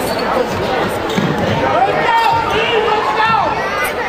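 A basketball game in a gymnasium: the ball bouncing on the hardwood court and short squeaks of players' shoes, over crowd voices and shouts echoing in the hall.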